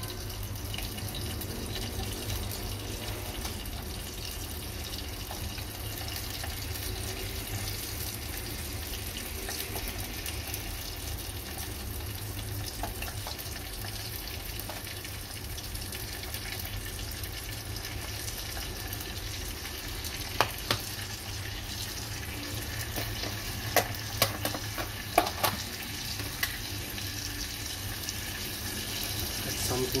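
Garlic and chopped vegetables frying in oil in a small saucepan over a gas flame, a steady sizzle. Several sharp knocks of a utensil or ingredients against the pan come about two-thirds of the way through.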